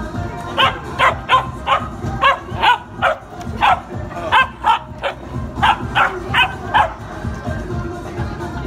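Puppy barking, a run of about fifteen short, high-pitched barks in quick irregular groups, stopping about a second before the end.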